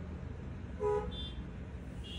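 A short, pitched toot like a vehicle horn just under a second in, followed by a brief high-pitched tone, over a steady low background rumble.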